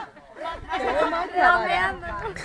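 Speech: voices talking over each other.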